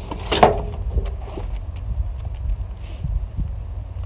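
Wind rumbling on the microphone, with one louder knock about half a second in and then scattered light knocks and scrapes as a shovel is handled in loose garden soil.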